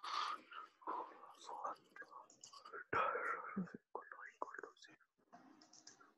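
A man quietly whispering and muttering under his breath in short, broken phrases.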